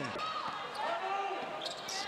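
A basketball being dribbled on a hardwood court during live play, with voices in the arena around it.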